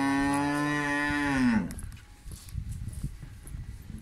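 A young water buffalo calling in one long, steady moo that drops off and ends about one and a half seconds in, followed by low scuffling sounds.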